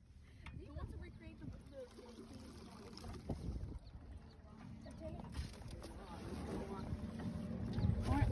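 Low rumbling and knocking as a small aluminium rowboat is rocked, growing louder toward the end, with faint laughter and voices over it.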